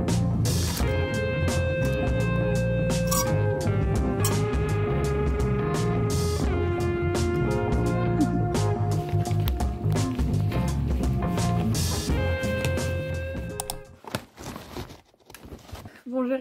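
Background music with a steady beat and held melodic notes. It stops about two seconds before the end, leaving only faint scattered clicks.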